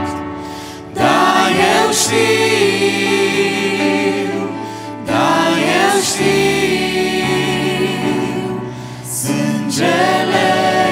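A small mixed group of men's and women's voices singing a slow hymn in harmony, over held keyboard chords. Three sung phrases each swell in after a short dip, at about one, five and nine seconds.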